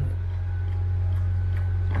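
A steady low hum runs unbroken with no other distinct event, and a few faint thin tones sit above it.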